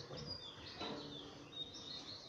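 Small birds chirping: several short, high calls over faint outdoor background noise.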